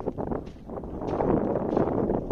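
Wind buffeting the camera's microphone, an uneven low rumble that builds toward the end, with light irregular crunches on top.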